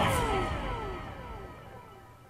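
Electronic transition sound effect: several tones sliding downward together and fading away.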